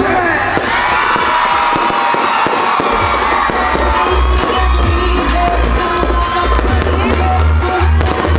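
Live pop music from a stage concert, heard over a cheering crowd; the bass beat drops out briefly about a second and a half in and comes back about three seconds in.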